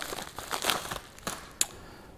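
Crinkling and rustling of a small paper package being torn open and handled, with a few light clicks.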